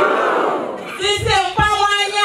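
A crowd shouting back in unison, then about a second in a woman's voice shouting again through a microphone: call-and-response chanting at a political rally.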